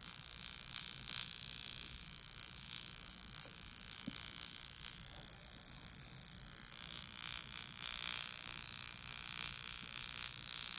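Oxylift high-frequency facial wand running as its glowing glass electrode glides over the skin: a steady high hiss broken by irregular crackling snaps, the small sparks that she calls a little electric shock.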